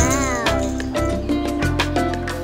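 Background music, with a short cat meow that rises and falls in pitch in the first half second.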